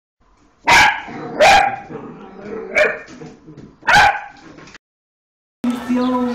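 A dog barking four times over about three seconds, the barks loud and sharp, with a low background between them; then the sound cuts off abruptly.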